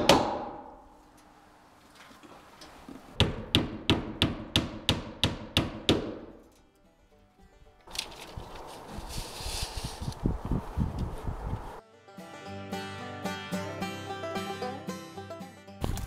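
A hammer driving nails as a window is fastened into the wall: about a dozen sharp blows at roughly four a second. Near the end, background music with held notes takes over.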